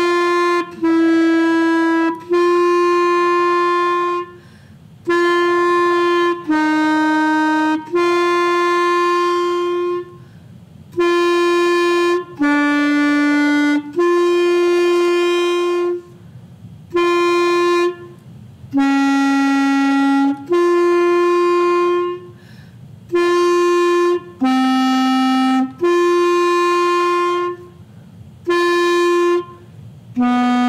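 B-flat clarinet playing a long-tone exercise in groups of three held notes, with breaths between. Each group is open G, then a lower note, then G again. The lower note steps down by a half step each time: F sharp, F, E, E flat, D, D flat, and C starting near the end.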